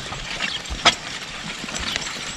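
Horse-drawn steel spring-tooth harrow dragged through loose, stony garden soil: a steady scraping rustle from the tines, with one sharp clink a little under a second in.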